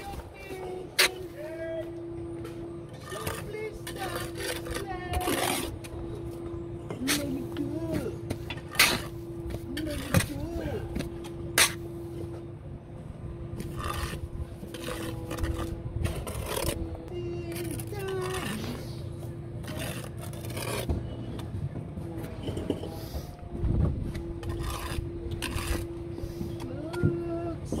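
Bricklaying with a steel trowel: mortar scraped and spread on the bed, with sharp clinks scattered through as the trowel taps bricks down and strikes off excess. A steady hum runs under most of it, and there are voices in the background.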